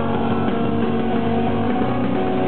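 Live rock band playing loud, electric guitars holding steady chords over the full band.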